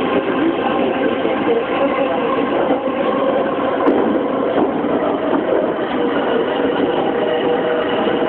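Yamanote Line E231-500 series electric commuter train running, heard from inside the front car: a steady hum of traction motors and wheels on the rails, with faint steady tones over the rolling noise.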